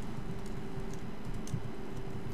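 Laptop keyboard being typed on, a scattering of light key clicks as a line of code is entered, over a steady low hum.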